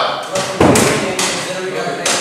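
A sudden thump about half a second in, over voices in a classroom.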